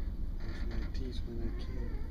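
A brief wavering vocal sound, broken into a few short pieces, over a steady low rumble.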